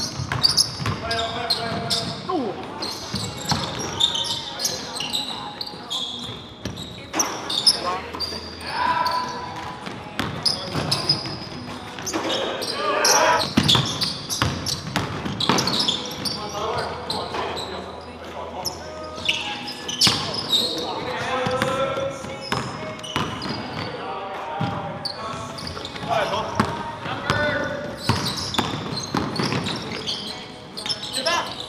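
Basketball game in a gymnasium: a ball dribbling on the hardwood floor with sharp repeated bounces, mixed with players' scattered shouts and calls in the echoing hall.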